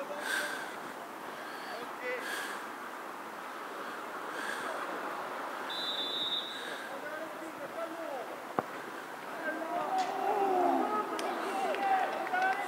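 Distant shouts and calls of youth football players on the pitch while a free kick is lined up. A brief faint whistle comes just before the middle, and a single sharp thump of the ball being struck for the free kick comes about two-thirds of the way in. The voices then grow louder as play moves on.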